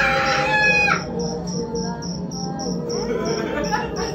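Crickets chirping steadily, about three chirps a second, over a low steady drone. In the first second a loud, high, pitched cry rings out for about a second and breaks off.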